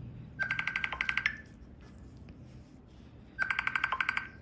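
Mobile phone ringing: two bursts of rapid trilling beeps, each just under a second long, about three seconds apart.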